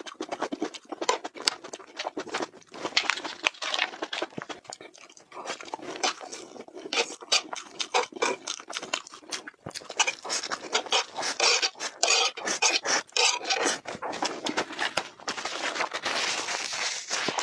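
Close-miked eating sounds: chewing and slurping a mouthful of spicy red noodles, with a fork scraping and clicking against the tray.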